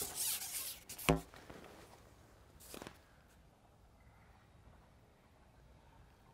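Rasping scrape of a long carbon fishing pole being shipped back for a hooked fish, lasting about a second, followed by a short squeak and a brief faint swish.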